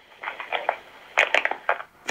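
Handling noise down a telephone line: irregular crackling and knocks as a mobile phone is taken from the caller, the loudest knocks a little past halfway.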